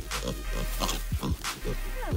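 Kune kune pigs grunting in quick, short grunts over background music with a steady low bass.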